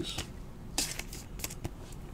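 Trading cards being handled: soft rustles of card stock sliding against card, with a few light clicks, the clearest burst about a second in.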